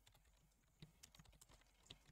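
A few faint keystrokes on a computer keyboard, scattered quiet clicks against near silence.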